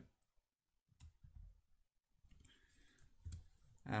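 A few faint computer mouse clicks against near-silent room tone.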